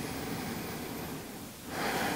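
A person breathing slowly and deeply, one long breath fading out about one and a half seconds in, with the next beginning just before the end.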